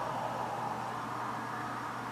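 Steady hiss with a faint low hum underneath: room tone and recording noise, with no other event.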